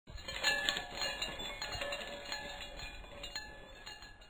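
Opening sound sting of chiming, bell-like metallic notes and light clinks, loudest near the start and fading away.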